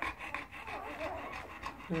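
Yellow Labrador retriever panting, a quick, even run of breaths.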